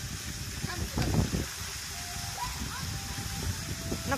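Water jets of a musical fountain show spraying with a steady hiss, faint music playing along with it. A brief low rumble comes about a second in.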